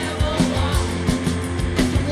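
Live punk rock band playing a song: electric guitars and a drum kit with a steady beat.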